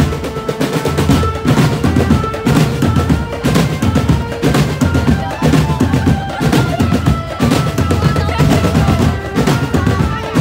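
Indonesian marching drum band playing a pop tune arrangement: rapid snare drum rolls and pounding bass drums in a driving rhythm, with a pitched melody line running over the drums.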